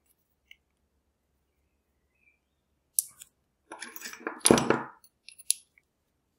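Metal clicks and clinks as a brass lock cylinder is taken apart with a plug follower. It is silent for about three seconds, then one click, then a cluster of clinks with a knock about four and a half seconds in, and a couple of sharp clicks near the end.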